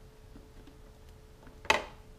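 A single sharp plastic clack from the plastic housing of a Litter Champ litter disposal bin, with a short ring after it, about a second and a half in.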